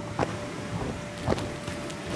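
Two dull thumps about a second apart: a child's feet landing on the inflatable floor of a bounce house.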